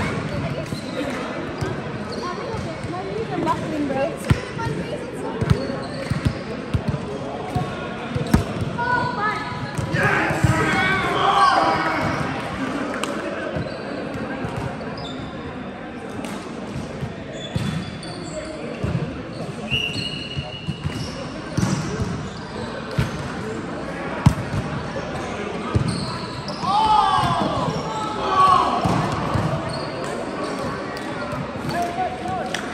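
Volleyball being played in a large, echoing sports hall: scattered sharp thuds of the ball being struck and landing, with players' voices calling out, loudest in bursts about a third of the way in and near the end.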